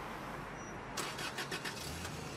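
Inside a car: a steady low hum, with a quick run of five or six sharp clicks about a second in.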